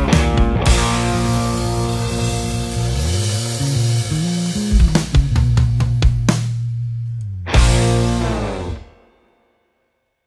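Live rock band with electric bass, guitar and drum kit playing the ending of a song: quick band hits, then a held chord with the bass sliding up and down, more stabs, and a final hit about seven and a half seconds in that rings out and stops just before the end.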